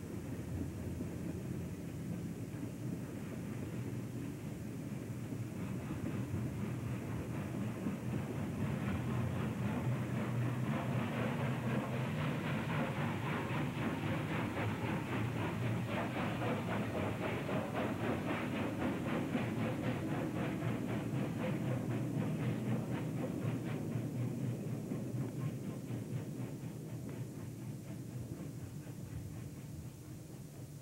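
Union Pacific steam locomotive working a freight train past, its exhaust beats coming thick and fast, growing louder as it nears and fading in the last few seconds as the cars roll by.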